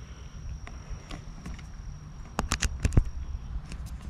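Handheld camera being handled and jostled, with a low rumble and a quick cluster of sharp clicks and knocks a little past halfway, the loudest about three seconds in, as a charger cable is plugged into it. A faint steady high insect tone runs underneath.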